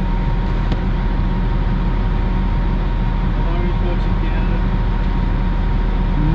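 Steady low rumble of a truck's engine heard inside the cabin, with a faint steady high tone running over it.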